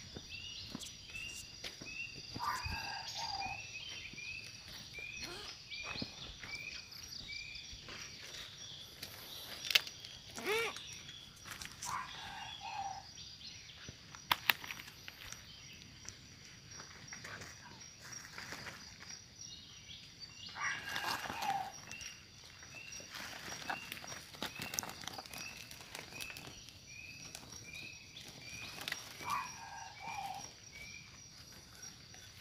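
Forest ambience: a bird repeats a short high note about twice a second, over a steady high insect drone. A few short falling calls come through, along with rustling and clicks of movement over dry leaf litter.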